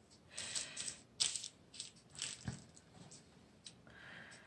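Quiet rustling with a few short, sharp clicks and taps as paint-covered disposable gloves are pulled off and dropped onto a plastic drop sheet.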